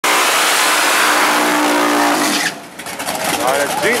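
A car engine running hard at high revs under a loud rushing noise; its pitch falls just before the sound cuts off abruptly about halfway through.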